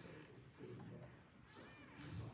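Near silence: room tone of a large meeting hall, with a faint spoken word early on and a brief faint squeak near the end.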